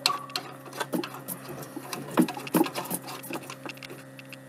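Plastic aquarium bulkhead nut being turned slowly by hand on its threads: irregular light scrapes and clicks over a steady low hum.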